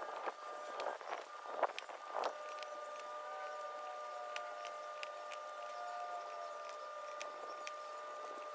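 Thin metal bird-deterrent pins being pushed into the plastic ring atop a weather station's rain gauge: about four light clicks in the first couple of seconds, then only a faint steady tone.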